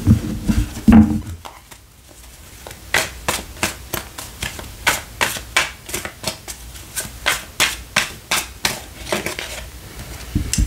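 A tarot deck being shuffled by hand, the cards clicking together about three times a second in an even run from about three seconds in. Two dull thumps come near the start.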